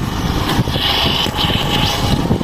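Hero Glamour Xtech motorcycle riding at low speed, its small single-cylinder engine running under wind rumbling on the microphone. A high steady tone joins in through the second half.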